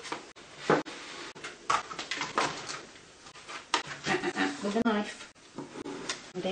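A voice with no clear words, over several short knocks and scrapes from a butter knife working in a plastic tub of spread on a table.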